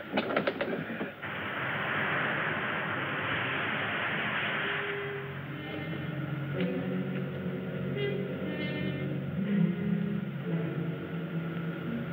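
Film soundtrack: a steady rushing hiss for about four seconds, then background music of long held low notes.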